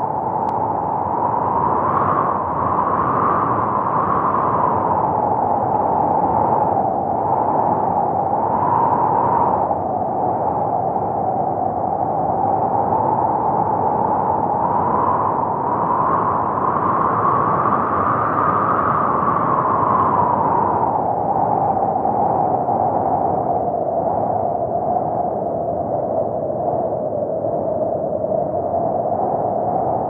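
A steady rushing, wind-like noise whose pitch slowly rises and falls in long sweeps, with no melody or beat.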